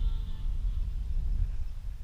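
Wind buffeting the microphone in a low, uneven rumble. Over it, the faint whine of a radio-controlled electric plane's motor slides down in pitch and fades out about half a second in.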